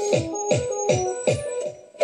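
Fast bakalao-style electronic dance music played from CD decks through a DJ mixer: a driving kick drum a little under four times a second under short synth-organ stabs. Near the end the music dips sharply for a moment as the mix is worked.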